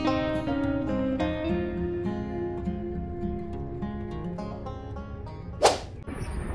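Background music of plucked acoustic guitar, ending in a short, loud whoosh transition effect near the end.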